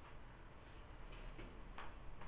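A few faint, light ticks in the second half over low room noise.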